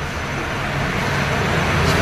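Steady rushing background noise with a low hum, growing slowly louder.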